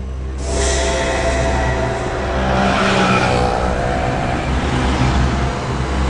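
Car engine accelerating and driving at speed, a rush of road noise swelling from about half a second in and loudest around three seconds, over a steady low hum.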